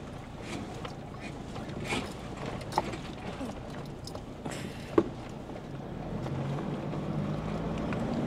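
Cabin noise of a four-wheel-drive on an unsealed dirt road: a steady rumble with scattered knocks and rattles, the sharpest about three and five seconds in. The engine note builds toward the end.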